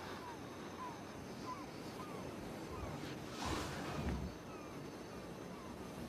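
Hushed, muffled room ambience with a faint chirp repeating about every two-thirds of a second through the first half, and a short rush of noise with a low rumble about three and a half seconds in.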